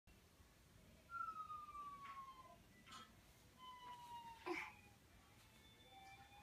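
Faint siren-like wail, one tone gliding slowly downward and later rising again, with a few soft knocks; the loudest knock is about four and a half seconds in.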